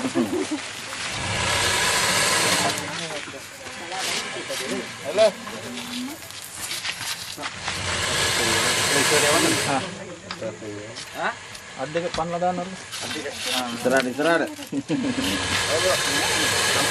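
A crocodile hissing twice, each a breathy hiss of about two seconds, the first near the start and the second about halfway through: a defensive hiss from a crocodile trapped and roped in a pit. Voices talk low in between.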